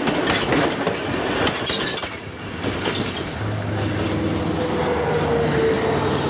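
Railway carriage wheels clattering over the rail joints as the last passenger carriage of a train rolls past, the knocks thinning out after about two seconds. A steady engine hum comes in over the second half.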